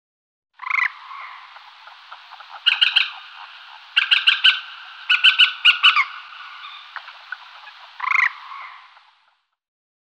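Croaking calls typical of frogs: bursts of rapid pulsed croaks in short series, the loudest clusters about three to six seconds in, over a faint steady background, fading out near the end.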